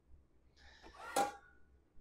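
Flexible plastic bowl scraper scraping mashed potato off against a stainless steel bowl: a soft, faint scrape with one light tap about a second in.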